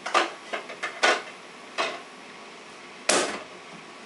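Knocks and clatter of a wooden IKEA play kitchen being handled by a small child: its cabinet door and parts bumped, opened and shut. About six sharp knocks, the loudest a little after three seconds in.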